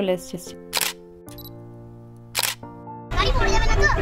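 Two camera shutter clicks about a second and a half apart, over soft sustained music tones. About three seconds in, these give way abruptly to louder voices over low car-cabin noise.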